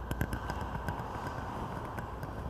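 Steady low room hum in a chapel, with a few faint, irregular taps and clicks from a person's sandaled footsteps as they walk across the sanctuary.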